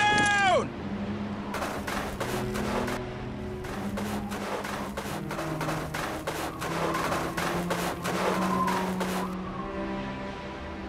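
Background music with sustained low notes under a stretch of rapid, repeated gunfire sound effects running from about a second and a half in to near the end. It opens with a short sound falling in pitch.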